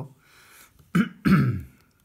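A man clearing his throat with a cough in two quick bursts, starting about a second in.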